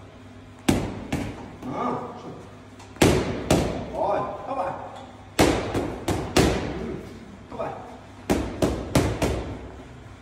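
Boxing gloves smacking into focus mitts in quick combinations: two punches, then two, then three, then a fast run of four near the end.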